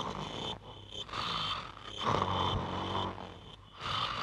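A man snoring in his sleep: about four long snores, each lasting around a second. Crickets chirp steadily underneath.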